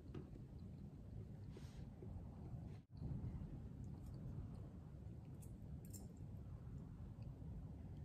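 Faint eating sounds: a knife and fork cutting and scraping on a ceramic plate, with a few light clicks of cutlery, over a steady low room hum. The sound cuts out completely for an instant just under three seconds in.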